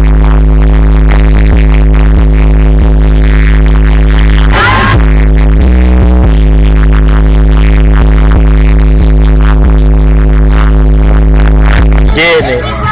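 Electronic music with a heavy, steady bass playing very loud on a car stereo, heard inside the car. A brief high sliding sound cuts through about five seconds in.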